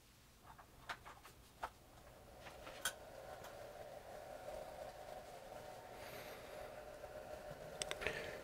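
A few clicks as the smart battery charger is plugged in, then its small cooling fan starts up about two and a half seconds in and keeps running with a faint, steady hum as the charger begins its desulfate pulse-charge stage.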